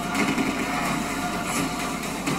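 Film trailer soundtrack playing back: a steady low rumbling drone of score and sound effects with a few faint held tones.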